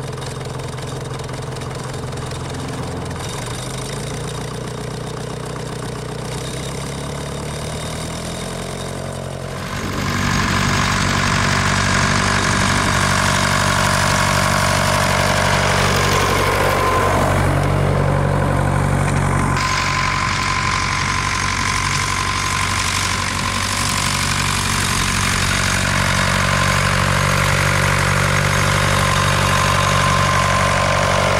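Nuffield tractor's engine running steadily under way, first heard from on the tractor itself, with its pitch shifting a few seconds in. About ten seconds in the sound jumps louder as the tractor is heard close by from the ground.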